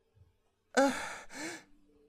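A woman's voice saying a hesitant, breathy "I… uh," two short syllables about a second in.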